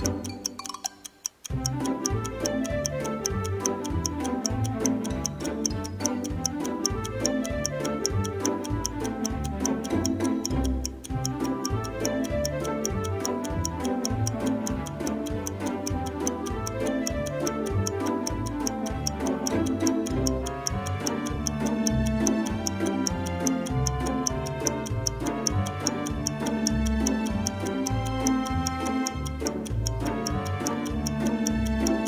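Upbeat background music with a steady beat, and a rapid, even clock-like ticking over it as a timer sound effect. It starts after a short gap about one and a half seconds in.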